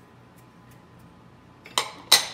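A small ceramic dish set down on stacked bowls with a short, loud clink near the end, after a quiet stretch with a few faint ticks.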